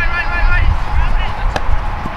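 Voices calling out, then a single sharp slap about one and a half seconds in as a flying disc is caught in gloved hands.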